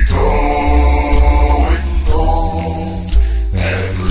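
A cappella gospel singing: two long held phrases with a short break about two seconds in, over a deep bass line.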